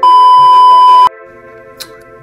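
A loud, steady electronic beep, one pure high tone held for about a second, then cut off abruptly. Quieter background music runs under it and goes on after it.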